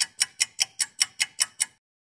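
Clock-like ticking sound effect, an even run of sharp ticks about five a second, stopping shortly before the end.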